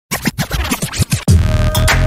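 Electronic intro music: a fast run of short stuttering, scratch-like hits, then about a second and a quarter in a heavy bass comes in under a single held tone.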